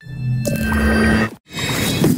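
Electronic logo-intro music and sound design: sustained synth tones under a swelling wash that cuts out suddenly just past halfway, then a fresh swell that peaks near the end.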